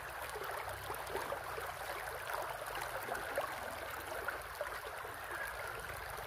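Shallow rocky creek running over stones, a steady rush of water.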